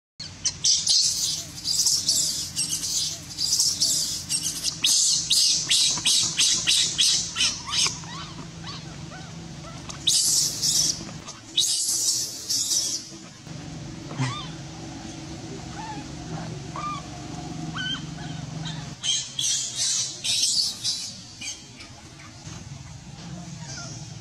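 Baby monkey crying in bouts of shrill, rapid squeals, two or three a second, with pauses between the bouts.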